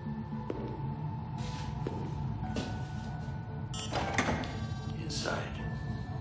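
A low, steady droning hum, with several short breathy rushes of noise about a second apart, the strongest about four seconds in.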